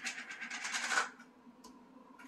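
A clear plastic food container of cut tomatoes being handled: a scraping rustle lasting about a second, then a few faint small ticks.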